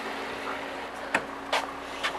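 Car engine idling with a steady low hum, with two short sharp clicks a little past halfway.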